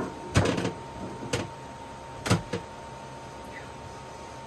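Several separate knocks and clunks as the round inspection cap on a boat's freshwater tank is handled and taken off, the first and third loudest, about a second apart.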